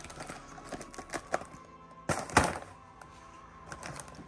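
Faint background music, with a few light clicks and taps from a cardboard snack box being opened and handled. About two seconds in there is one louder, short rustling knock from the box.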